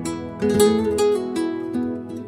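Acoustic guitars in the flamenco or gypsy rumba style playing an instrumental passage, with strummed chords and a few sharp, percussive strokes.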